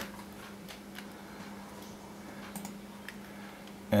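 A few faint, scattered clicks at a computer desk, over a steady low hum.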